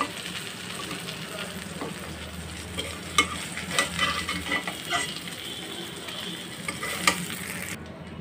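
Fish steaks sizzling in hot oil in a steel karahi, with a metal spatula scraping and clinking a few times against the pan and a steel bowl as the fried pieces are lifted out. The sizzle cuts off abruptly near the end.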